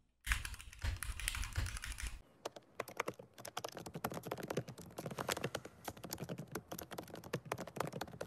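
Fingernails tapping and clicking quickly and irregularly right at the microphone, a dense patter of sharp clicks from about two seconds in, after a low rumble at the start.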